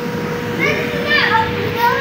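Children playing on an inflatable bounce house: high-pitched child voices and calls from a little way in to near the end, over a steady background hum.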